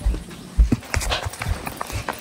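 Footsteps while walking, dull thuds about twice a second, with knocks and rubbing from a handheld phone being carried.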